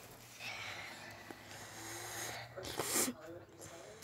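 Quiet, indistinct child's voice sounds and breathing close to the microphone, with a short breathy puff about three seconds in.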